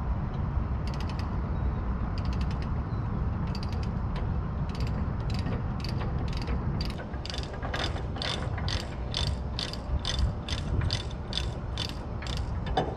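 Ratchet binder on a tie-down chain being cranked loose by hand: a run of sharp ratchet clicks, a few at first, then a steady two to three a second from about halfway, louder toward the end, over a steady low rumble.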